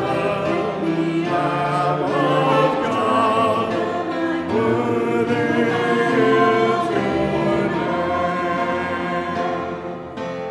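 Many voices singing a sacred song together in steady, sustained phrases, like a church congregation or choir.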